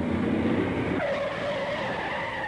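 Car tyres skidding: a rumbling skid, then about a second in a long tyre screech that falls slightly in pitch.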